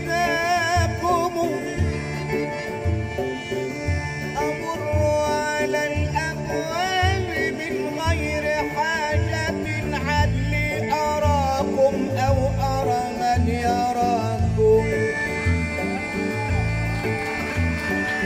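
Egyptian folk-fusion band playing live: a male voice sings a wavering, ornamented melody over bass and percussion keeping a steady beat.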